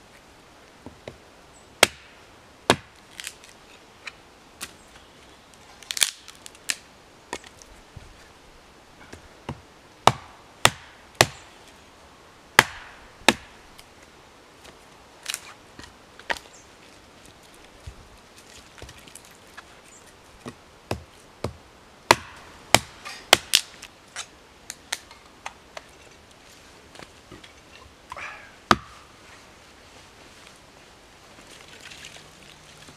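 Hatchet splitting small logs into quarters on a wooden chopping block for firewood: a series of sharp chops at irregular spacing, some in quick runs of two or three, with pauses between.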